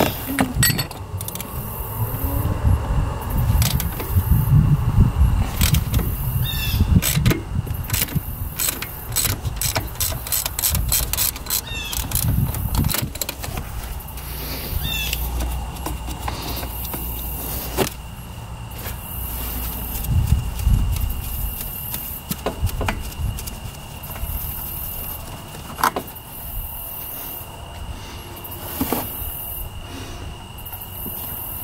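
Spin-on oil filter being worked loose by a gloved hand on an ATV engine: scattered metallic clicks, scrapes and short squeaks, thickest in the middle, over uneven low rumbling handling noise.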